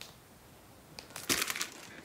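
Vinyl LP jackets in plastic outer sleeves being handled and swapped: a brief crinkling rustle about a second and a half in, after a nearly quiet first second.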